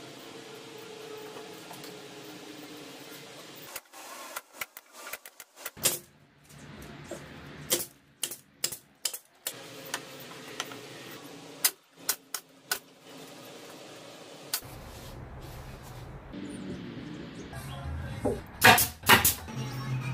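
Irregular sharp clicks and knocks from hand work on a wooden drawer, scattered through, with a cluster of louder knocks near the end.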